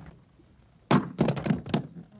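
Handguns thrown down onto a hard floor, landing in a quick run of about five thuds and clatters about a second in.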